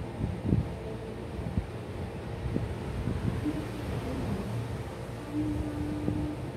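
Steady low rumble of room background noise, with a few soft knocks and a brief faint hum near the end.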